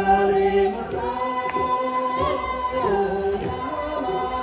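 Group of voices singing a Sherpa Shebru song together, holding long notes with some slides between pitches.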